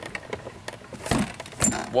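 Rustling handling noise with a few clicks and two dull thumps, about a second in and a little past halfway, followed right at the end by a startled "whoa".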